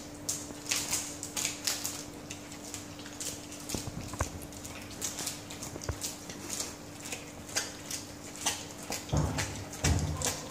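Dalmatian dog chewing and crunching lettuce leaves, an irregular run of short crisp crunches and wet mouth sounds.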